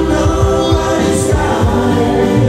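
Live band music with a steady drum beat, a bass line and sustained vocal harmonies.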